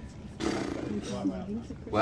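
A man's voice speaking quietly and indistinctly, starting about half a second in.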